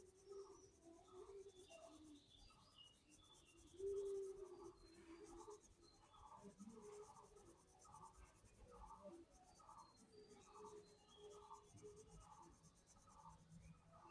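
Faint pencil shading on paper: short scratchy strokes, about two a second, as the lead is worked back and forth. A brief low tone about four seconds in.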